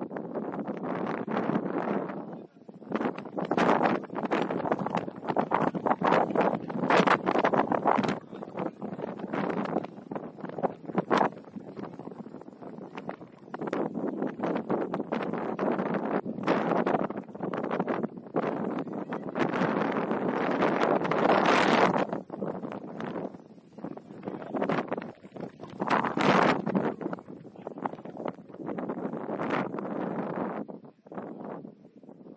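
Gusty wind buffeting the microphone, surging and dropping irregularly every second or two, with the strongest gusts about two-thirds of the way in.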